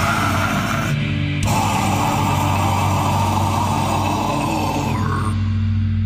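Heavy metal song with distorted electric guitars playing held chords. A little past five seconds the bright upper part drops away, leaving a low chord ringing on.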